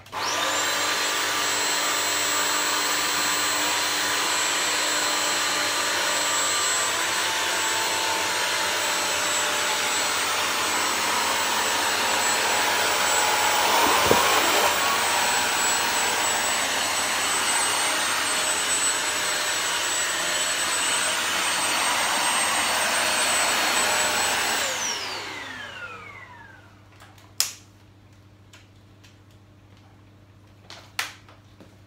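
Bissell CrossWave wet-dry floor cleaner switched on, its suction motor and brush roll running with a steady whine as it is pushed back and forth over a wet rug. About 25 seconds in it is switched off, and the whine falls in pitch as the motor winds down, followed by a single sharp click near the end.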